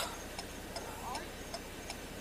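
A car's flasher ticking faintly and evenly, about three ticks a second, over a low steady hum.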